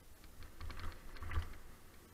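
Mountain bike clattering and rattling as it rolls over a rough dirt trail strewn with dry leaves, a quick run of small clicks and knocks with low bumps underneath, loudest about a second and a half in.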